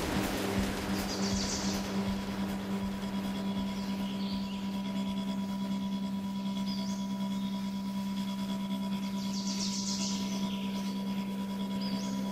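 A steady, low ambient-music drone of sustained held tones, with short high bird chirps every two to three seconds on top.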